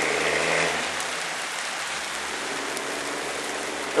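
Diesel milk tanker tractor-trailer receding down the road: its low engine note fades out about a second in, leaving a steady hiss of tyre and road noise that slowly dies away.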